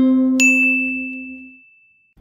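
The end of a short intro jingle: a last low note rings and fades out, and a bright bell-like ding comes in about half a second in and rings on until it dies away.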